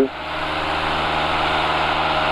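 Steady drone of the Van's RV-6A's piston engine and fixed-pitch propeller heard inside the cockpit, running at climb power.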